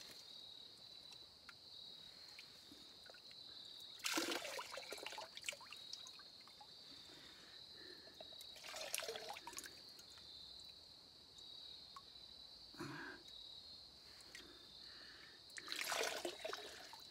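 Water being scooped with a small cup from a shallow pool and poured into a plastic filter bag: faint trickling pours every few seconds. Under them runs a steady, high insect drone.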